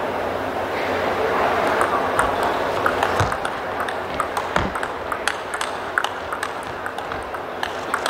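Table tennis rally: the ball clicking sharply off the rackets and table in a long, quick exchange that starts about two seconds in, over steady crowd noise in the hall.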